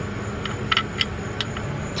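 A few light metallic clicks and taps as the 19 mm drain plug bolt is put back into the oil pan, over a steady low hum.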